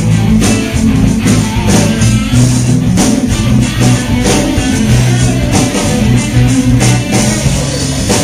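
Live band playing loudly: electric guitar over a drum kit with steady beats.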